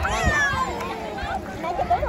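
A toddler's high, fussy wail that rises and then falls in pitch just after the start, with a lower voice beneath it and more voices near the end. The child is tired out.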